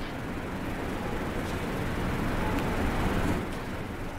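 Steady background room noise: an even low rumble with hiss and no distinct events, swelling slightly toward the middle.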